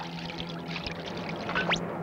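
Water pouring from a watering can onto soil, a cartoon sound effect, over background music with a held low note. Near the end a quick, sharp rising whistle sweeps up.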